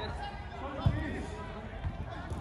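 A football kicked on a 5-a-side pitch: one sharp, dull thud about a second in and a fainter one near the end, with faint voices of players behind.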